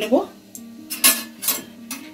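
Stainless-steel steamer ware clinking: three sharp metallic clinks about half a second apart in the second half, over soft background music.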